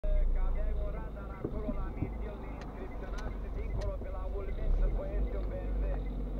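A voice talking, not clear enough to make out, over the steady low rumble of a car heard from inside its cabin. There are three faint clicks evenly spaced near the middle.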